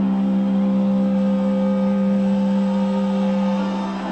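A rock band's amplified instrument holding one long, steady note through the arena PA, unchanged in pitch, cutting off at the very end as a loud burst of sound begins.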